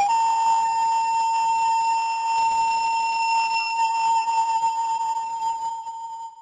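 A steady, high-pitched electronic alarm tone: one unbroken note that starts suddenly and holds for about six seconds over a light hiss, fading out at the end.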